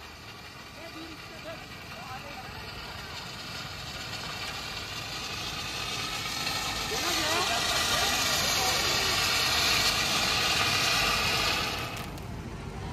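Handheld fountain firework spraying sparks with a steady hiss that builds louder through the middle and cuts off sharply just before the end, over faint voices.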